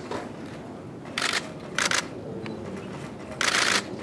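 Press photographers' camera shutters firing in rapid bursts of clicks, three bursts with the longest near the end, over a low room murmur.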